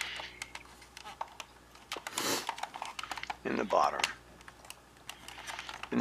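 Scattered light clicks and taps of a plastic toy car being handled and turned over in the hands, with a short rush of noise about two seconds in and a brief vocal sound a little after.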